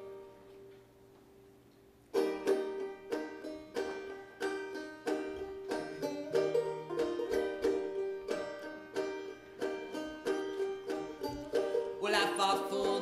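Solo banjo: a strummed chord rings out and fades, then from about two seconds in a steady picked pattern of repeated notes begins, the instrumental opening of a song.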